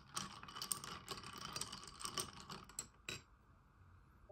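A long spoon stirring iced coffee in a ribbed cup: a faint, quick, irregular run of small clicks and rattles for nearly three seconds, then one last click.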